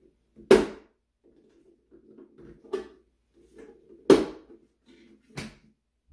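Plastic top lid of a Roomba self-emptying Clean Base being fitted and pressed into place on the dock: four sharp plastic knocks, the loudest about half a second in and about four seconds in, with plastic scraping between them.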